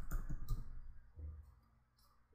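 Computer keyboard keys clicking in a quick run of keystrokes as a word is typed, with one softer tap a little past the middle.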